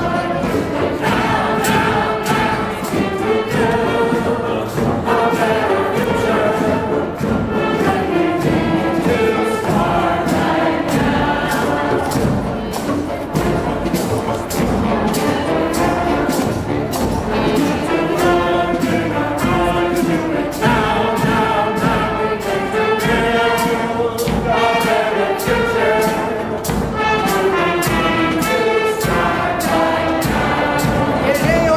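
Group of singers singing a song together in chorus, accompanied by a marching band with a steady drum beat.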